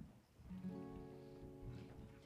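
A single guitar chord strummed about half a second in and left to ring for about two seconds.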